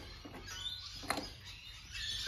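Quiet handling at a Victa two-stroke lawnmower engine as the spark plug is being taken off, with a single faint click about a second in.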